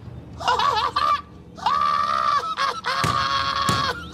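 A man's high-pitched squealing laughter: a short wavering burst, then two long held shrieks of about a second each.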